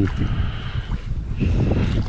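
Wind buffeting the microphone with a steady low rumble, with a few faint knocks as a wet ratchet strap is handled over a bucket of rock-salt brine.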